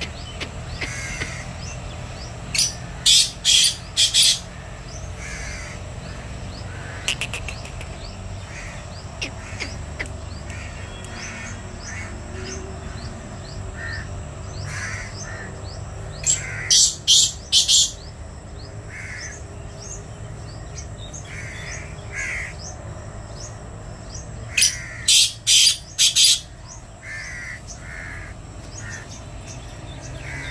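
A black francolin cock calling three times, about a second in, midway and near the end. Each call is a quick run of four or five loud notes lasting about a second and a half.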